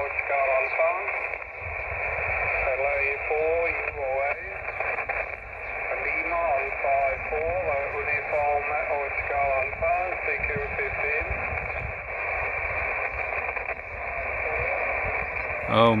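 Weak single-sideband voice from a distant amateur station coming out of a Xiegu X5105 transceiver's speaker on the 15-metre band, thin and narrow-sounding under a steady hiss of band noise. The voice stops about two-thirds of the way through, leaving only the hiss.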